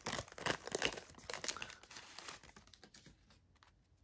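Wax-paper wrapper of a 1989 NBA Hoops card pack crinkling and tearing as it is peeled open by hand, a quick run of small crackles that dies away near the end.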